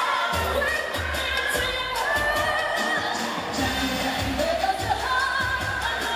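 A woman singing a pop song live into a handheld microphone over a backing track with a pulsing bass beat, heard through a PA system.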